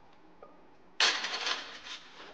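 A loaded barbell comes down onto the bench-press rack about a second in: a sudden loud crash with a rattle that dies away over about a second.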